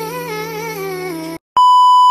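Music with a singing melody cuts off abruptly about one and a half seconds in. A moment later comes a loud, steady, single-pitched electronic beep lasting under a second: a test-tone style beep used as a glitch transition effect in the edit.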